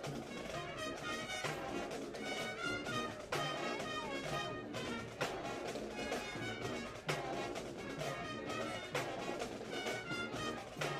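Marching band playing a brass tune with sousaphones and a drum line, the drum strikes standing out between sustained horn notes.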